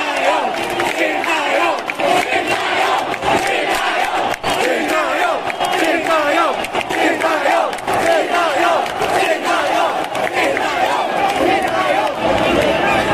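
Football crowd in the stands shouting and cheering, many voices overlapping.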